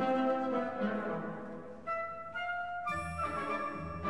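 Orchestral zarzuela music: held notes thin to a few long tones mid-way, then the fuller orchestra comes back in with low bass notes near the end.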